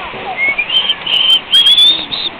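High whistled notes: a short run of about four clear tones that step up in pitch, the last one sliding upward, with a few sharp clicks near the end.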